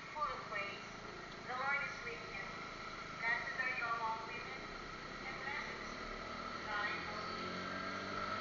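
Indistinct speech over a motorcycle running along a street, through a helmet camera's small microphone; a low engine hum becomes clearer near the end.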